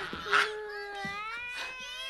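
A cat meowing: one long, wavering call, after a brief sharp sound just before it.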